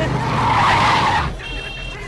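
Car brakes squealing and tyres skidding as a car brakes hard, lasting about a second, loudest in the first half.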